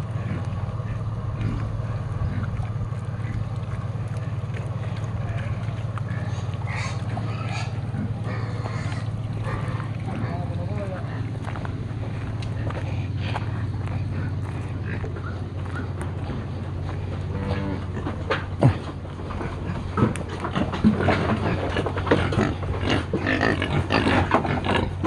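Domestic pigs grunting and feeding, over a steady low hum. In the last several seconds come a few sharp knocks and busier noise.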